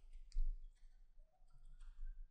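A few sharp computer-mouse clicks as handwriting is drawn on screen, the loudest about half a second in and another near the end, over a faint low hum.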